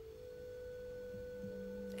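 A soft, steady drone of meditation background music: a few pure held tones, with a lower tone joining about half a second in.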